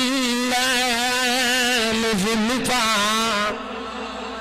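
A man's voice singing a long, drawn-out melodic line with a wavering pitch into a microphone, breaking off about three and a half seconds in.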